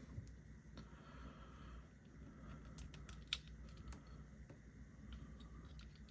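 Faint clicks and taps of small plastic toy parts being handled as a plastic adapter is pushed onto an action figure's pizza shooter, with one sharper click about three seconds in.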